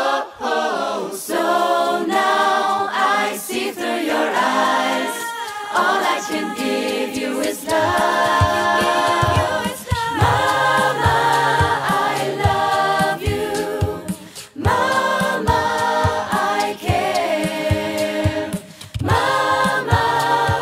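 A cappella pop choir singing in close multi-part vocal harmony. From about eight seconds in, a low sung bass line and beatboxed percussion hits join under the chords.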